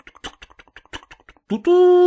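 A man's voice imitating a steam locomotive: a quick run of short chuffing puffs, then, about one and a half seconds in, a loud, steady hoot like a train whistle.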